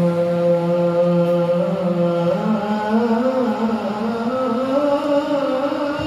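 Men chanting sholawat, a devotional song in praise of the Prophet. One low note is held for about two and a half seconds, then the melody climbs slowly in a long, drawn-out wavering line.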